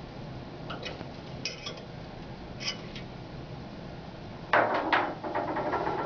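Faint metallic clicks of a hex key working the set screw on a transducer holder. About four and a half seconds in comes a louder clatter of metal against the stainless steel screener, followed by a few smaller knocks.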